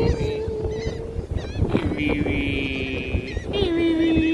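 A person's voice making long drawn-out vocal sounds, three held notes, the later ones lower, with wind buffeting the microphone.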